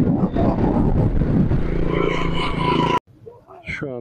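Wind buffeting and road noise from vehicles travelling along a highway, with a steady engine drone joining in the second half; the sound cuts off abruptly about three seconds in.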